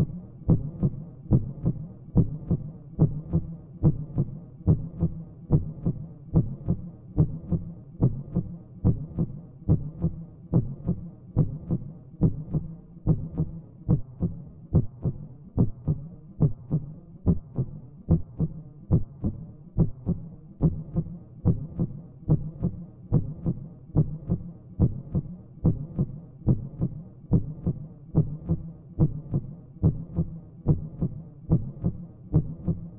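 Heartbeat sound effect: a steady, even lub-dub pulse, low and thudding, repeating at an unchanging pace.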